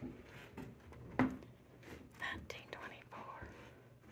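Footsteps on old wooden stairs and floorboards: a heavy thud about a second in, with lighter knocks around it. Faint whispered voices are heard in the second half.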